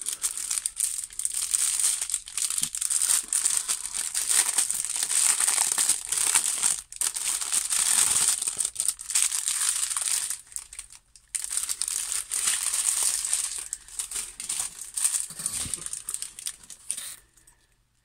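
Plastic packaging crinkling as the small plastic bags of diamond-painting drills are handled, with brief breaks about seven and eleven seconds in; it stops just before the end.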